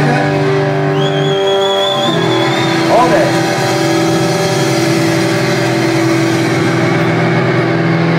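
Live rock band's electric guitar holding sustained, droning chords that change about a second in and again about two seconds in. A thin, wavering high whistle rides over it from about one to three seconds in, and a voice calls out briefly around three seconds.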